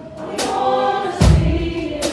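Gospel music with a choir singing over a steady beat, a drum hit falling about every 0.8 seconds, the strongest with a deep low thump.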